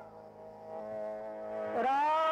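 Devotional singing with a steady sustained accompaniment: a held sung note fades at the start, the steady accompanying tone carries on quietly, and the voice comes back in near the end, gliding up into a new long note.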